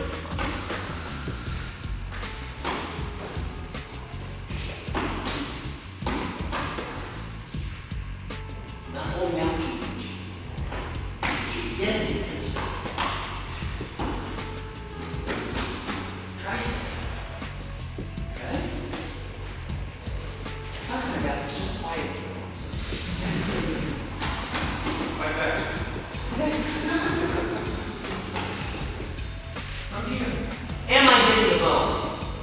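Quiet, indistinct talking over background music, with a few soft thumps.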